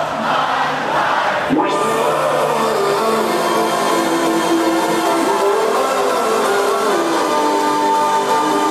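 Loud electronic dance music with sustained synth chords, played over a large festival sound system, with crowd noise beneath it.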